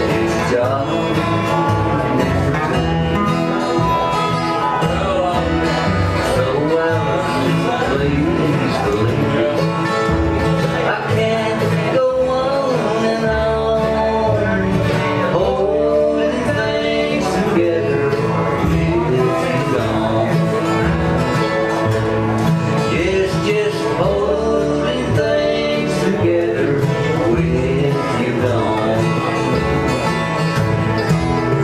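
A bluegrass band playing live: upright bass, acoustic guitars and a guitar played flat on the lap, slide-style.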